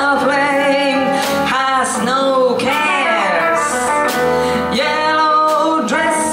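Live band music: a woman sings a gliding, bending melodic line into a microphone over piano, guitar and drums.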